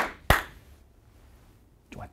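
A man clapping his hands twice, two sharp claps about a third of a second apart.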